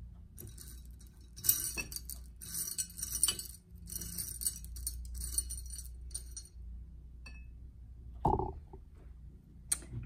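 Small pearl beads and buttons clicking and rattling against each other and a shell-shaped dish as a hand rummages through them, in irregular clusters for several seconds. A short low sound follows near the end.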